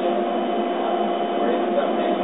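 Laser cutter running as it cuts holes in wood strips: a steady hum over a low hiss, with no change in level.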